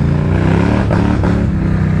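ATV engine revving under load as the quad is stuck in thick mud, its pitch held fairly steady with small rises and falls.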